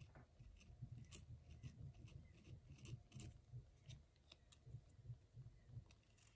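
Faint, irregular scratching of a ballpoint pen tip dragged over a dried bay leaf in short strokes.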